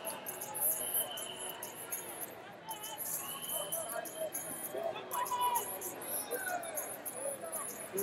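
Hubbub of a large indoor sports hall: many distant voices and calls echoing together, with short high squeaks scattered over it.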